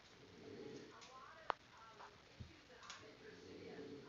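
Faint, distant voices at a low level, with one sharp click about one and a half seconds in.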